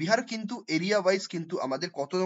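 Speech only: one voice talking continuously.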